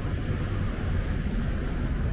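Steady low rumble of wind buffeting the camera microphone outdoors, with no other distinct sound standing out.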